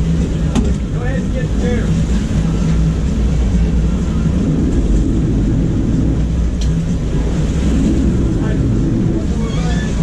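Sportfishing boat's engines running with a steady low drone, with water churning at the stern and wind on the microphone.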